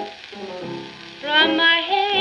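Playback of a 1946 shellac 78 rpm record of a blues song with vocal and piano, with surface crackle under the music. The music drops quieter for about a second, then held notes with a wavering pitch come in.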